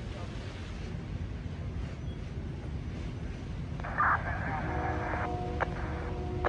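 Steady low rumble of fire engines running at the fireground. About four seconds in there is a short, louder burst, and a few steady tones follow it.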